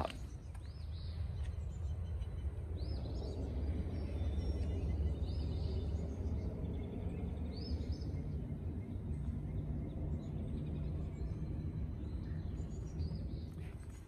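Outdoor wetland ambience: a steady low rumble, with a small bird giving short high chirps every two to three seconds.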